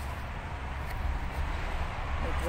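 Steady outdoor background noise: a low rumble with a faint hiss, and one faint click about a second in.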